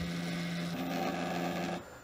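Stepper motors of a small X-Y gantry running as the carriage travels, a steady whine whose tone changes about three-quarters of a second in and stops shortly before the end.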